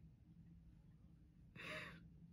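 Near silence, then near the end one short, breathy exhale from a woman, a sigh after laughing.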